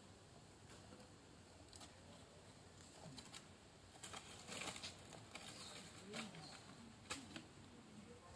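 Faint, crackly rustling of dry leaves handled and stepped on by monkeys, in short scattered bursts, thickest about four to five seconds in with a sharp crackle near the end.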